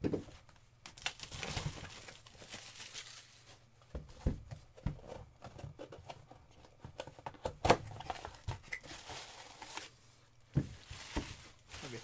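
Plastic shrink-wrap torn off a small cardboard box, then the box handled and opened and tissue paper crinkled around a plastic display cube, with scattered knocks and taps; the sharpest knock comes about two thirds of the way through.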